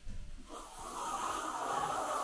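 Hand-pump pressure sprayer misting water onto a render base coat: a steady hiss that starts about half a second in.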